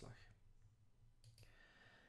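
Near silence: room tone with a low steady hum, broken a little over a second in by one faint, short computer mouse click.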